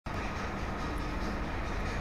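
Steady background noise: an even hiss and rumble with a low hum underneath, and no distinct event.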